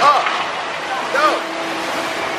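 Two short shouted vocal calls, each rising then falling in pitch and about a second apart, over a steady hiss of ride ambience on the Pirates of the Caribbean boat ride.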